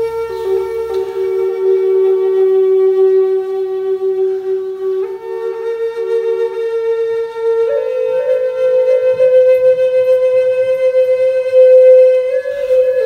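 Wooden Native American-style flute playing slow, long held notes. A low note is held for about five seconds, then a higher note takes over, stepping up slightly near eight seconds and held on.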